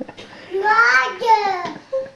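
A toddler's high voice chanting a two-part sing-song phrase once, the pitch falling at the end of each part.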